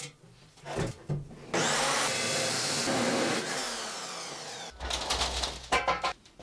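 A Metabo abrasive chop saw comes on after a couple of knocks and cuts through rectangular steel tube with a loud, even grinding noise. Then its motor winds down, falling in pitch.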